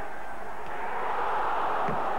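Football stadium crowd noise, a steady mass of voices that swells slightly partway through.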